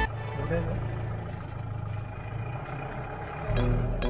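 Steady low engine hum and rumble of a safari jeep on the move, heard from inside the cabin. Background music cuts back in near the end.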